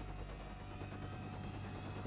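A steady electronic drone with a low hum and a faint high whine, the transition sound effect under an animated logo bumper. It cuts off at the end.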